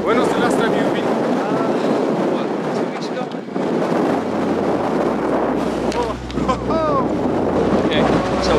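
Strong wind blowing across the camera microphone: a loud, steady rushing noise.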